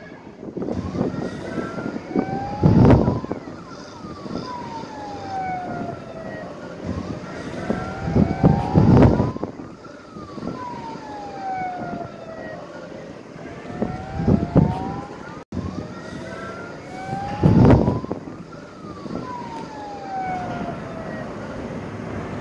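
Emergency vehicle siren wailing, its pitch sweeping slowly down and back up about every six seconds, with loud low bursts of noise recurring every few seconds.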